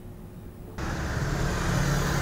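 A short quiet gap, then about a second in, street traffic noise starts abruptly, with a motorbike engine running steadily as it passes close by.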